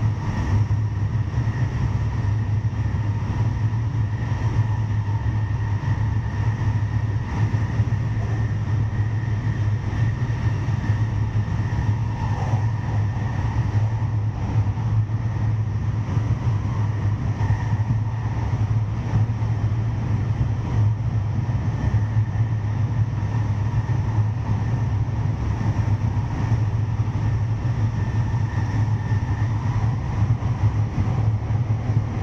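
Electric special rapid train running at speed through a rail tunnel: a steady low rumble of wheels on rail, with a faint steady whine above it.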